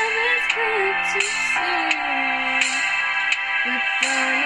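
A girl singing over a backing track of sustained chords, holding long notes that slide from one pitch to the next.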